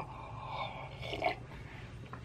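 Quiet sipping and swallowing of cold tea from a mug.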